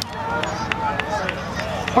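Background chatter of several voices in an outdoor crowd, with about six scattered sharp clicks.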